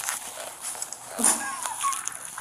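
A woman laughing behind her hand, in short, high-pitched bursts, mostly in the second half.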